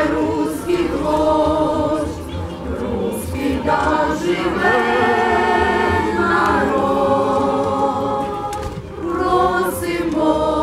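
A group of voices singing together like a choir, in long held notes with short breaks between phrases.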